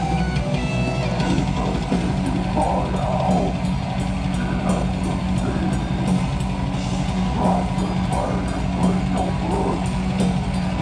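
Heavy metal band playing live: distorted electric guitars, bass and fast drums, loud and unbroken.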